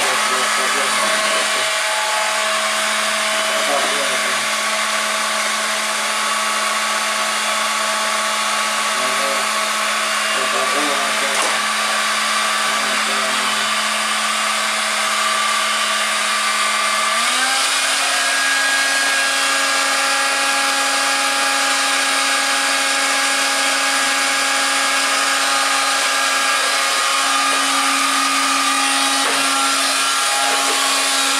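A stick vacuum cleaner's motor running steadily, with a high whine and a humming tone. About halfway through, the pitch steps up a little and holds.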